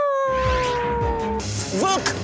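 A man howling like a wolf through cupped hands: one long howl that slides slowly down in pitch, followed near the end by a short, quickly rising call.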